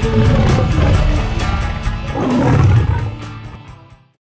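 A lion's roar sound effect laid over music, swelling to its loudest about two and a half seconds in, then fading out together with the music near the end.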